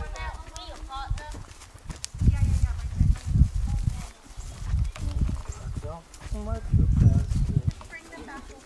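A paint horse walking at a slow walk with a child on its back, its hooves falling softly on grass. Two stretches of loud, irregular low rumble come about two seconds in and again near the end, and faint voices sound beneath.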